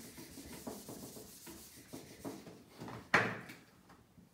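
Hand-held wiping of marker writing off a whiteboard: a series of soft rubbing strokes, with one louder stroke about three seconds in.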